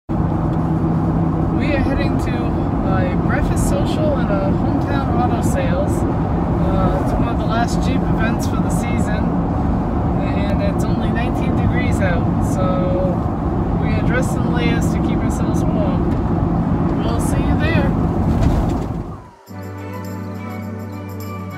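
Steady road and engine drone inside the cabin of a moving soft-top Jeep, with a woman talking over it. The drone cuts off suddenly near the end and organ music begins.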